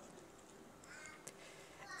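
Near silence: room tone, with a faint, brief sound about a second in.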